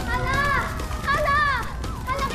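Two high-pitched screams from young women, each rising and falling in pitch, over a low steady rumble.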